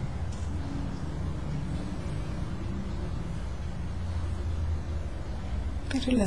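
Steady low background rumble, like distant traffic, with a faint wavering tone in its first few seconds.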